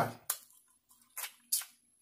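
Close-miked chewing of a bite of boiled corn on the cob: three short chewing sounds, the first a moment in and two close together past the middle.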